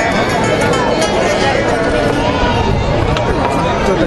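Crowd chatter: many voices talking at once close by, at a steady level.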